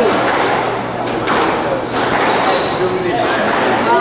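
Squash ball hits, dull thuds off rackets and the court walls, echoing in the indoor hall with people talking in the background.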